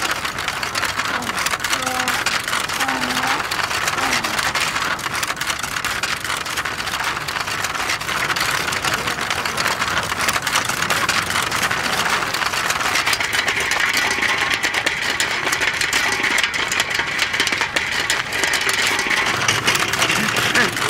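A film reel rolling over rough, stony dirt ground, a continuous dense rattle and scrape.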